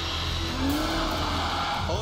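Saab 9-3 saloon driven hard through a bend: a steady low engine rumble, with one note that rises and then falls over about a second.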